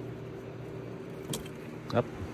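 Steady low mechanical hum, with a single sharp click about two-thirds of the way through and a short sound just at the end.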